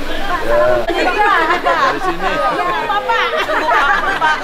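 Several people chatting at once, their voices overlapping.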